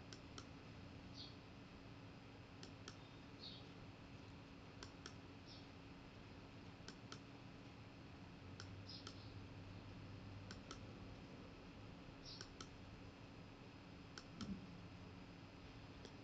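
Faint computer mouse clicks, each a quick press-and-release pair, repeating about every two seconds over near-silent room tone, as slide animations are advanced one at a time.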